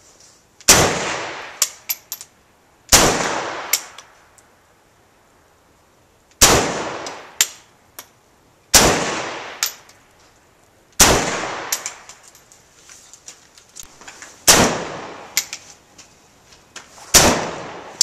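Ruger Mini-30 semi-automatic rifle in 7.62x39mm firing seven single shots at an uneven pace, two to three and a half seconds apart. Each shot has a ringing tail and is followed by a few light clinks.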